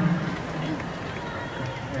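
Live arena audience noise: a steady murmur of the crowd with faint voices in a pause of the spoken thanks from the stage.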